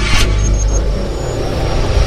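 Logo-intro sound design: a deep, steady bass rumble with a quick whoosh just after the start.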